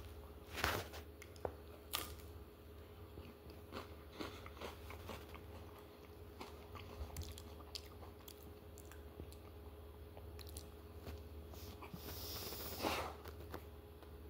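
A person chewing and biting a crisp ice cream cone close to the microphone: scattered small crunches throughout, with louder moments about half a second in and near the end.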